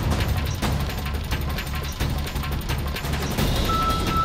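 Background music score with a steady low pulse and quick ticking percussion; a high held tone comes in near the end.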